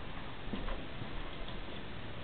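A Chihuahua's claws clicking lightly on a hard floor: a few faint, irregularly spaced ticks over a steady background hiss.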